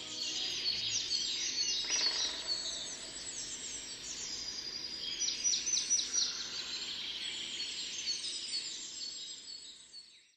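Several birds chirping and calling together, with a quick run of repeated chirps about halfway through; the chorus fades out at the very end.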